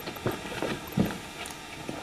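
A few light, irregular knocks and clicks, the loudest about a second in, over faint background noise.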